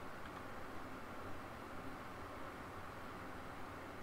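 Steady low hiss from the microphone's noise floor, with faint room tone and no other distinct sound.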